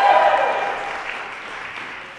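Small audience applauding and dying away, with one voice holding a long cheer over the clapping that fades out about a second in.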